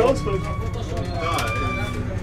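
Jelcz 120M city bus heard from inside while under way: a steady low diesel engine rumble, with a thin high whine over it in the second half.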